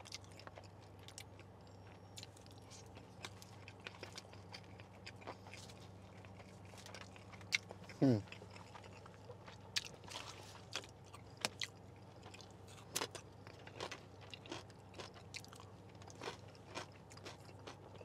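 Close-miked eating sounds: a person chewing a mouthful of food, with wet mouth clicks, lip smacks and a few crunches scattered throughout. A short falling 'hmm' comes about eight seconds in.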